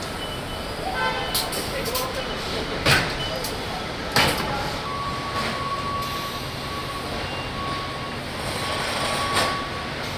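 Car assembly-line noise: a steady hum of machinery with a few short, sharp clanks or hisses from tools at work, and a thin steady high beep or whine that sets in about halfway through.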